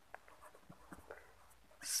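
Marker pen writing on paper: a run of short, faint scratching strokes.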